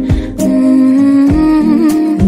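A female singer humming one long held 'mm' at the end of a pop song's pre-chorus line, over the song's backing music.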